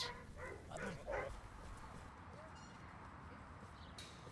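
A dog barking faintly, three short barks within the first second and a half.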